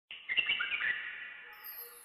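Birds chirping in a quick flurry as the intro opens, fading within the first second or so. A very high shimmering sweep, falling in pitch, comes in near the end.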